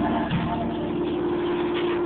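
Gospel group singing with band accompaniment, holding one long sustained chord.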